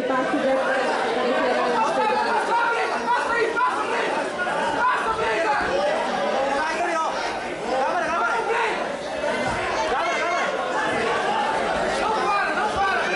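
Crowd of spectators talking and calling out over one another in a large hall: a steady babble of overlapping voices.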